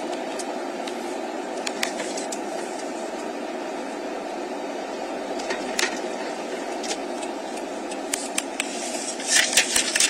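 Steady road and engine noise heard inside a moving car, with a few light clicks and a louder cluster of them near the end.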